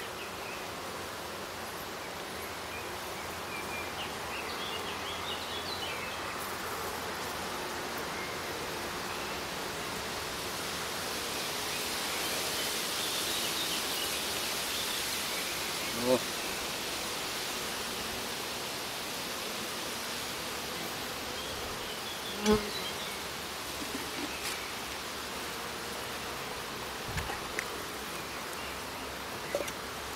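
Honeybees buzzing steadily around an open hive, the buzz swelling a little around the middle. One short knock comes about three-quarters of the way through.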